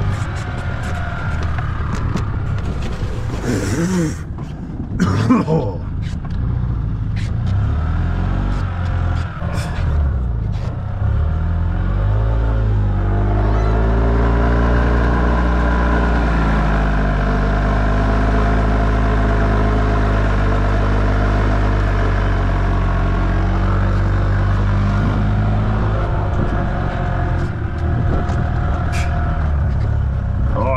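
Golf cart driving through fresh snow: its motor runs with a steady low rumble, the pitch climbing about twelve seconds in and then holding higher. A few sharp knocks come about four and five seconds in.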